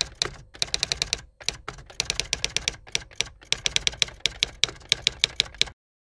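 Typing on a computer keyboard: quick, uneven runs of key clicks with a few brief pauses, stopping abruptly near the end.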